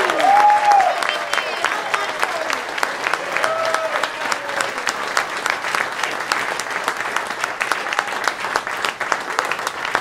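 Audience applauding steadily, with a few high whooping cheers in the first second and another about three and a half seconds in.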